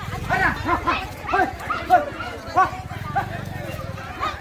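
People's voices calling out in short, separate shouts, over a low steady background rumble.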